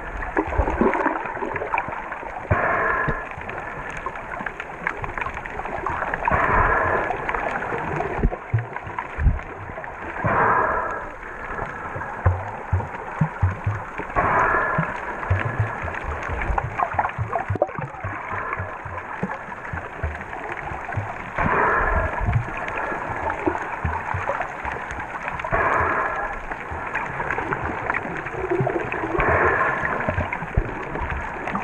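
Underwater noise through an action camera's waterproof housing: muffled water rushing and knocking against the case, with a louder swell about every four seconds.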